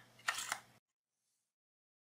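Plastic chip card pushed into the slot of a USB contact smart card reader: a short scrape with two sharp clicks within the first second as it seats.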